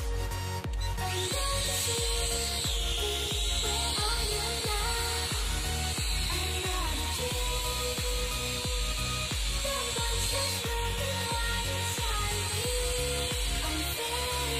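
A small quadcopter drone's electric motors and propellers whine steadily at a high pitch, starting about a second in. Background music with a steady beat plays under it.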